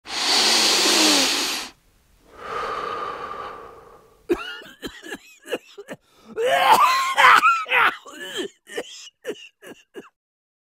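A person coughing: two long harsh rasps, the first and louder lasting under two seconds, then from about four seconds in a run of short hacking coughs with voice in them.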